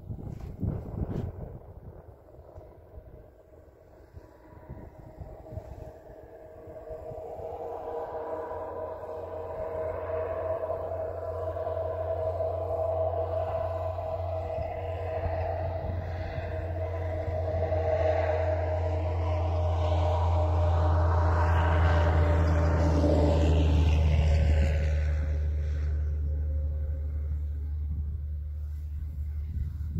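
A vehicle engine passing by, its steady drone growing louder over about twenty seconds, peaking near the end and then starting to fade.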